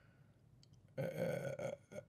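Near silence, then about a second in a man's brief held vocal sound, steady in pitch and lasting under a second, such as a drawn-out 'uhh'.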